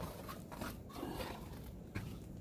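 Faint rustling and handling noise as the enamel lid of a charcoal kettle grill is carried over the grill to cover it, with a small click near the end.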